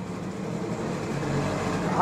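Road vehicle noise: a steady, even wash of engine and traffic sound, with a low rumble swelling from about a second in.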